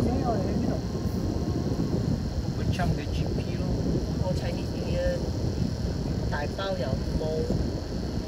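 Low, steady engine and tyre rumble inside a car's cabin as it drives slowly. Faint short snatches of voices come over it a few times.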